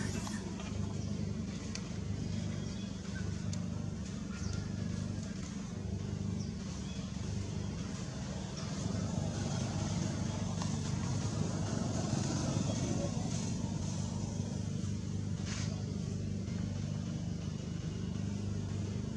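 A steady low mechanical hum, like a motor or engine running, holding even in level throughout.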